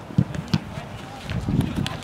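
Footsteps and ball touches on artificial turf as two people run with a football: two sharp knocks in the first half second, then a low, muffled scuffling of movement.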